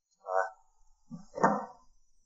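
Speech only: a man calls out a short “Report!” (报告) and another man answers “Come in” (进来) about a second later.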